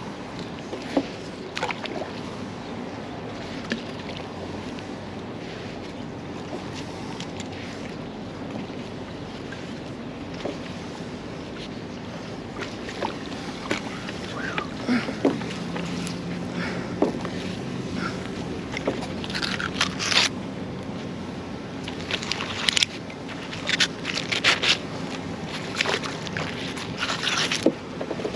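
Magnet-fishing rope being hauled in by gloved hands, with a steady low rush at first and a run of sharp scrapes and clicks that grows busier through the second half.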